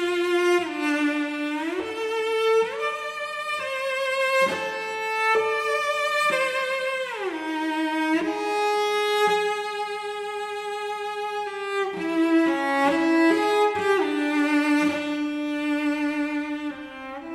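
Solo cello playing a slow melody high on the instrument, bowed with vibrato, sliding between some notes, with a long held note near the middle.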